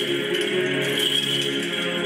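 Orthodox church choir singing a liturgical chant, with light metallic jingling of small bells over it.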